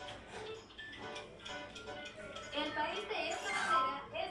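Quiz background music with a ticking countdown timer, playing from a television's speakers.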